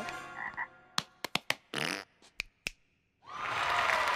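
Animated-cartoon sound effects: a quick string of short sharp clicks and brief noisy bursts, then a steady rushing noise that swells in near the end.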